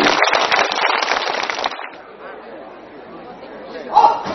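Audience applauding and cheering, dense clapping that dies down about two seconds in; a loud cheer breaks out again right at the end.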